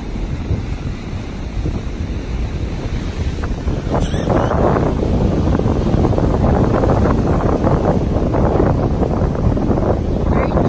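Heavy surf breaking and washing up a sand beach, with wind buffeting the phone's microphone. The rush of the waves grows louder about four seconds in.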